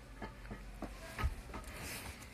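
Phone handling noise: rubbing against the microphone with several light taps and one duller knock a little past the middle, as the phone is held and moved.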